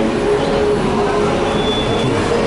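Steady, loud rumbling background noise of vehicles in an open transport area, with no music playing.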